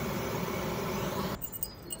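Steady rushing noise of a pan of cooking oil burning with tall flames on a gas burner. It stops abruptly about one and a half seconds in.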